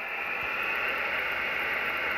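Kenwood TS-480SAT HF transceiver receiving on upper sideband: a steady hiss of band noise from its speaker, thin and cut off above the voice range by the sideband filter, growing a little louder over the first half second.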